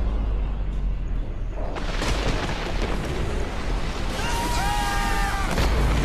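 Film-trailer sound design: a deep low rumble, muffled at first. About two seconds in, a loud rushing wash of heavy seas breaking over a boat takes over, with a few short gliding tones near the end.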